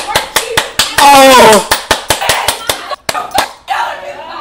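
A person clapping hands rapidly, about four or five claps a second, and letting out a loud yell that falls in pitch about a second in, then more claps and shorter shouts.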